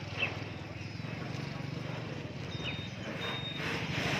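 A steady low engine hum runs throughout, with a few short chirps from caged songbirds, one near the start and one past the middle. Late on come two brief, clear, high whistled notes.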